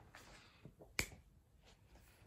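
Quiet room with one sharp, short click about a second in.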